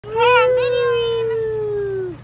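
A child's long, high-pitched vocal shout held for nearly two seconds, its pitch sagging slightly and dropping off at the end.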